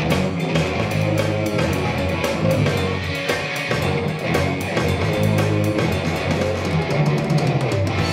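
Live rock band playing an instrumental passage with no singing: electric guitar over bass guitar and a drum kit, with regular drum and cymbal hits.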